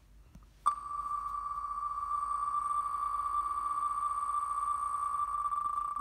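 Online spinning-wheel raffle app's sound effect as the wheel spins: a steady high electronic tone that starts abruptly about a second in and holds.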